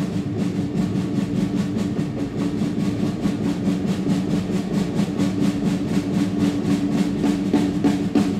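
Live instrumental rock band playing: rapid, even drum strokes over sustained low tones from baritone saxophone, bass guitar and keyboards.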